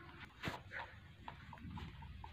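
Rabbit eating dry feed from a bowl: scattered small crunches and clicks, the loudest about half a second in.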